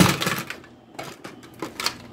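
Plastic clicks and knocks from a chest drainage unit and its tubing being handled and tilted: a loud cluster of knocks at the start, then a few lighter clicks.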